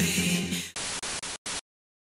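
Background music that stops about two-thirds of a second in, followed by choppy bursts of hissing static, a TV-noise style transition effect, cutting off suddenly about a second and a half in.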